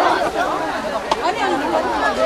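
Crowd chatter: many people talking at once in the open, with a single short click about halfway through.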